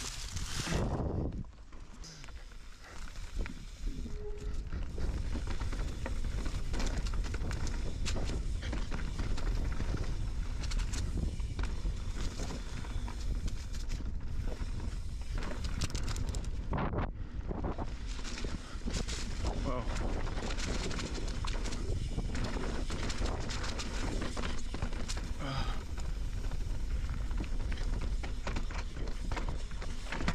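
Full-suspension mountain bike riding fast down a rocky dirt trail, heard from a chin-mounted camera. There is a steady rush of wind and tyre noise with a low rumble, and frequent knocks and rattles as the bike rolls over rocks. The noise builds up a few seconds in, once riding starts.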